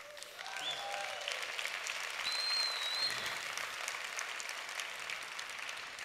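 A large audience applauding: clapping builds over the first two seconds and then slowly fades away, with a short high whistle about two and a half seconds in.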